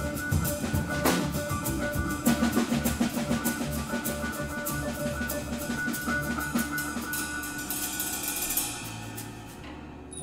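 Live jazz fusion band playing: drum kit and hand-played congas keep a busy rhythm under electric bass, electric guitar and keyboard. Near the end a cymbal wash rings out and the playing drops away in level.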